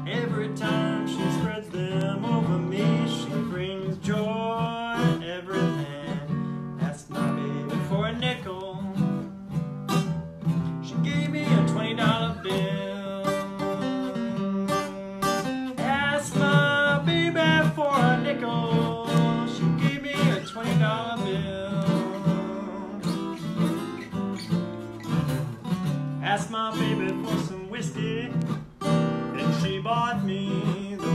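A man singing a slow blues song while accompanying himself on an acoustic guitar. The guitar plays throughout, and the vocal lines come and go over it.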